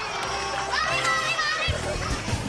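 Children's high-pitched voices shouting and crying out. Background music with a low beat comes in under them, its thumps starting near the end.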